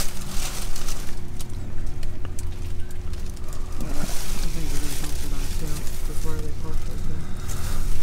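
Plastic trash bags rustling and debris crinkling and clicking as a hand digs through a dumpster, over the steady low hum of a nearby car engine. A faint voice is heard in the second half.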